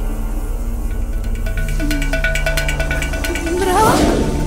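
Dramatic film background score: sustained low droning tones with a repeated higher plucked note and light regular ticks in the middle. Near the end comes a rising, wavering cry.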